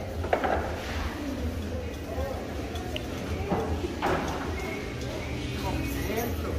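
Market-hall ambience: people talking in the background with a few short knocks and clatter, over a steady low rumble.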